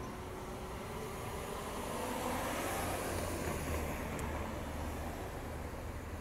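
A car passing on the street: its tyre and engine noise swells to a peak about three seconds in, then fades.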